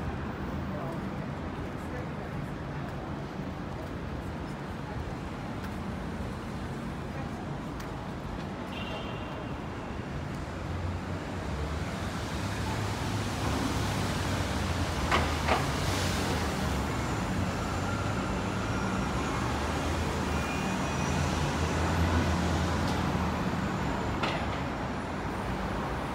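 City street traffic: cars and buses passing on a busy avenue with a steady low engine rumble that grows louder about halfway through, and a couple of brief sharp sounds near the middle.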